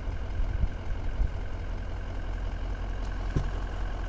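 Vehicle engine idling steadily with a low hum.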